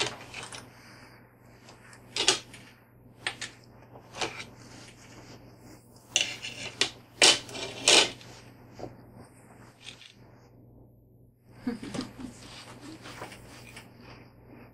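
Metal fork clicking and scraping against an open sardine tin on a plate: a series of sharp irregular clinks, the loudest pair about seven to eight seconds in.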